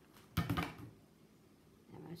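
Hot glue gun set down on the craft table: a brief clatter of a couple of knocks about half a second in.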